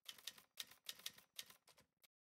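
Faint typewriter sound effect: a quick run of key clacks, about four or five a second, that cuts off abruptly, typing on a title caption.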